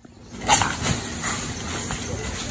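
A dog and a coati confronting each other in the undergrowth: a sudden loud animal cry about half a second in, followed by several shorter sharp sounds.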